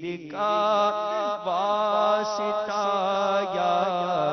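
A man's voice singing an unaccompanied Urdu devotional munajat into a microphone, holding long, slowly bending notes over a low steady drone.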